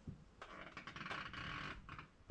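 Faint rustling and scuffing with a light click at the start, running for about a second and a half.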